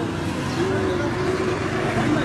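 Steady street traffic noise, with a voice calling out in one long drawn-out note over it from about half a second in.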